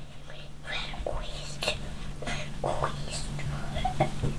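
A young girl whispering right up against a toy camera's microphone, in short breathy bursts, over a steady low hum.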